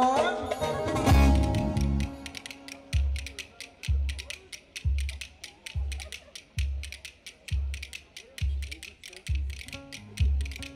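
Turkish folk dance music: a sung line ends right at the start, then a deep drum beat comes about once a second under a fast clacking of wooden spoons (kaşık).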